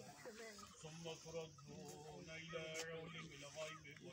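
Faint voices murmuring, too quiet for words to be made out.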